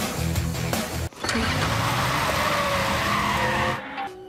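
Cartoon sound effect of a milk float's tyres skidding: a long, loud, noisy screech with a slowly falling squeal, starting about a second in and cutting off just before the end, over background music.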